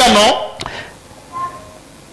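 A man speaking into a microphone, his speech trailing off about half a second in, then a pause of room tone with one faint, brief tone-like sound.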